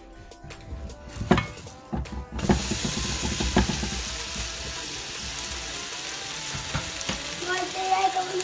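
Buttered grilled cheese sandwich being flipped in a nonstick frying pan with a silicone spatula: a few knocks and scrapes, then steady sizzling from about two and a half seconds in as the fresh side hits the hot pan.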